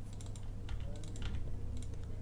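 Computer keyboard typing: a few scattered, irregular key taps over a steady low hum.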